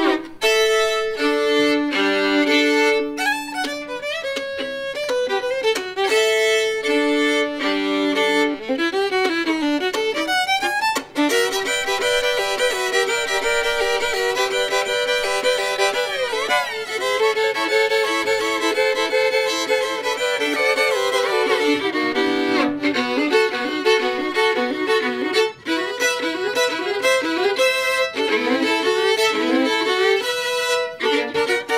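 Two fiddles playing a duet, bowed, with held two-note chords in the first several seconds and a short break about eleven seconds in before the playing runs on continuously.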